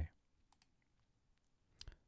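Near silence with a few faint clicks.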